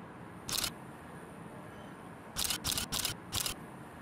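Camera shutter firing: one shot about half a second in, then four more in quick succession, about three a second, a little over two seconds in.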